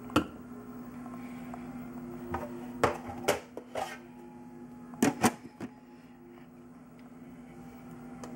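A steady low electrical hum with a handful of sharp knocks and clicks from things being handled on a kitchen counter: one just after the start, a cluster of them a couple of seconds in, and a pair in the middle.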